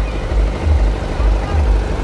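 Diesel generator running on a truck bed, a loud low uneven rumble with a faint steady hum above it, with crowd voices mixed in.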